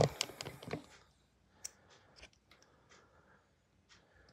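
Handling noise from fingers on the camera as it is moved: a short run of clicks and rubbing in the first second, then a few faint isolated clicks and taps with near quiet between.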